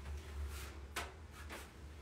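A steady low hum with three brief, soft clicks and rustles, from gloved hands handling a small cosmetic container and dropper.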